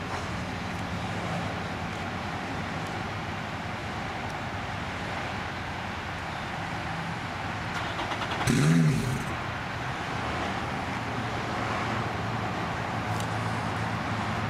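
Steady road-traffic noise with a low engine hum underneath. A brief, louder sound with a bending pitch comes about eight and a half seconds in.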